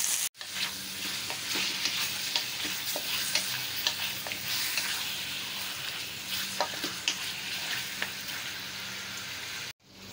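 Chicken pieces and garlic sizzling in hot oil in a stainless steel wok, with a wooden spatula scraping and knocking against the pan as the chicken is stirred. This is the sauté stage of chicken adobo, browning the raw chicken before the liquids go in. The sound cuts out for a moment just after the start and again near the end.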